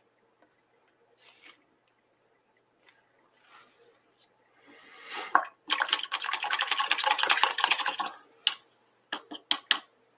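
A paintbrush being rinsed in a water jar, swished and rattled against the glass. It comes in as a short swish and then a quick run of clicking for about two seconds past the middle, with a few separate taps near the end as the brush is knocked on the rim.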